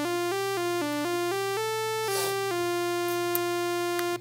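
Sawtooth-wave synthesizer built in Max, playing notes of a pentatonic scale on middle C. It steps quickly from note to note, about four a second, then holds one note for the last second and a half.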